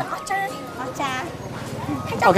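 Quiet speech with a short voiced sound about a second in, over background music.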